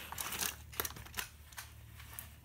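Faint, scattered plastic clicks and taps from a hand handling a plastic toy fighting robot.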